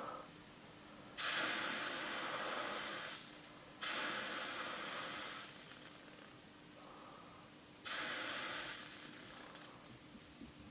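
Drops of distilled water hitting the hot stainless-steel top of a heated magnetic stirrer and hissing, three times. Each hiss starts suddenly and fades over a couple of seconds as the drops dance on a cushion of their own vapour (the Leidenfrost effect).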